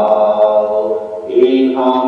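Voices singing a slow hymn in long held notes. The singing breaks off briefly about a second and a quarter in, then carries on.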